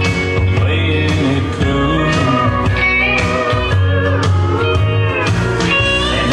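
Full-band country song playing, with a Telecaster-style electric guitar played along over it; gliding, bending guitar lines run through it.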